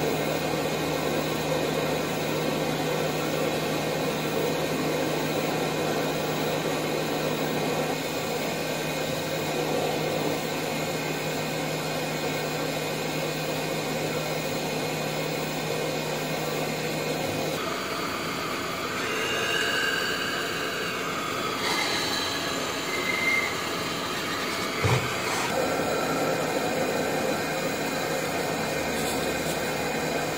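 Steady whirring noise of a running fan or similar small motor, with a low hum that stops a little over halfway through. A short faint click comes a few seconds later.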